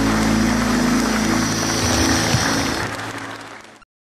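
Audience applauding over a low held music chord, fading out over the last second and cutting off just before the end.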